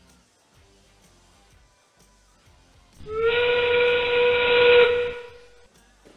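FIRST Robotics Competition field's endgame warning: a recorded steam-train whistle blown once for about two seconds, marking the last 30 seconds of the match. Its pitch rises slightly as it starts, it holds steady with a hiss under it, and then it cuts off.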